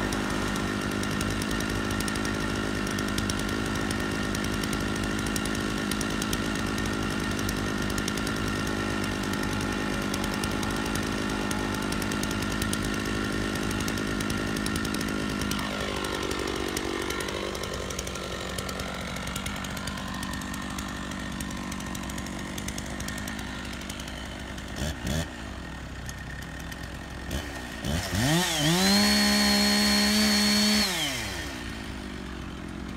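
Kubota MX5400 tractor's diesel engine running steadily, its note dipping and swinging about halfway before settling quieter. Near the end a Stihl chainsaw is pull-started: two brief surges, then it catches about two seconds before the end and revs up high and loud.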